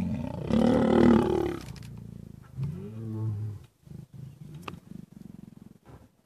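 A mating pair of lions growling loudly as the mating ends and the male dismounts: loud growls through the first second and a half, then a lower, shorter growl about three seconds in.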